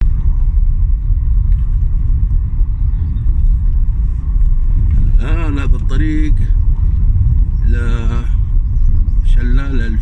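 Steady low rumble of a car's engine and tyres heard from inside the cabin while driving on a rough road, with short bursts of voices about five, eight and nine and a half seconds in.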